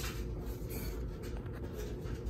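Glass cabochon eyes slid and set down on a tabletop by hand: a few short, faint scraping and rubbing sounds over a low steady hum.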